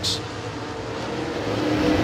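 Dirt super late model race cars' V8 engines running at speed on the track, a steady multi-car engine drone that grows louder through the second half.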